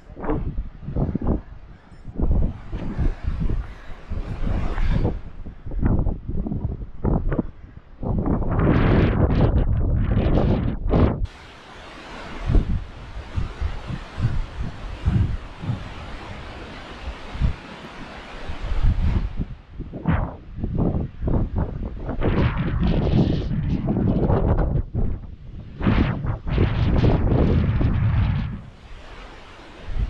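Strong gusty wind buffeting the microphone in irregular blasts, with a steadier rushing hiss for several seconds in the middle.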